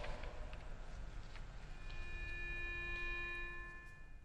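A single steady note, held for about two seconds from near the middle, sounded to give the choir its starting pitch before they sing. Before it, the reverberation of the spoken voice dies away in the large church.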